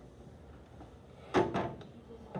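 Quiet room tone, then a single loud knock about a second and a half in that dies away within half a second.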